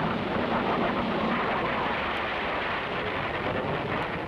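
A steady rushing noise with no tone, tune or voice, a sound effect on the cartoon's soundtrack.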